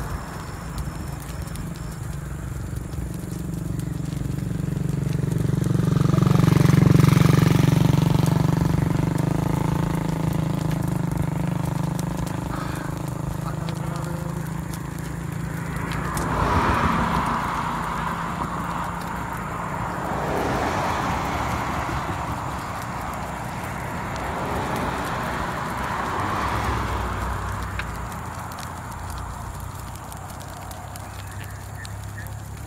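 A vehicle passing on the highway: its engine and tyre rumble swells to a peak about seven seconds in and fades over the next several seconds. Smaller swells of traffic noise follow later.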